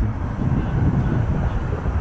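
Steady outdoor rumble of road traffic from an adjacent highway, with wind buffeting the microphone.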